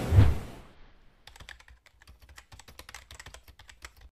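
A single low thump right at the start, then a quick, uneven run of soft keyboard-typing clicks over dead silence: a typing sound effect laid under an on-screen text caption.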